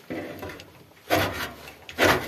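Ferro rod struck with a steel scraper to throw sparks onto birch-bark tinder at a small sheet-metal wood stove: short rasping scrapes, a light one at the start and a louder one about a second later, with another beginning at the end.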